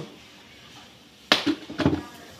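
Quiet for over a second, then a quick run of sharp knocks and taps in the last half second or so, from hands and kitchen things being handled at the table.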